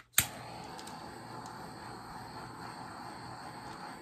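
Small handheld torch clicking as it is lit, then its flame hissing steadily as it is played over wet epoxy resin.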